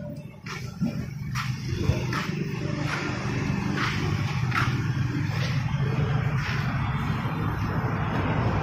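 A motor engine running steadily, a low hum that swells over the first two seconds and then holds level, with short sharp clicks about once a second.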